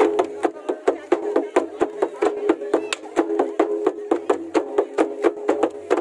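Santal folk drums, a hand-struck wooden barrel drum and a stick-beaten drum, played in a quick, even rhythm of about five strokes a second, with a steady pitched tune running under the beats.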